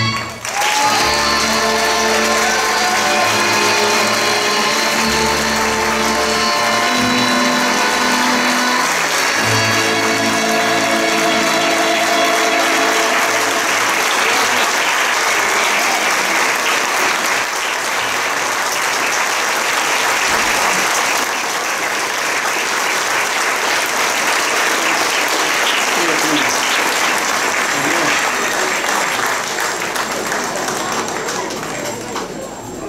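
Audience applauding, with the stage's live folk band still playing a closing tune under the clapping for roughly the first half; then the applause goes on alone.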